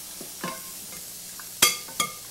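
Onions sizzling in a hot saucepan as a wooden spoon stirs them, with a few light ticks and one sharp knock near the end.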